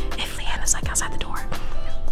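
A woman whispering over background music.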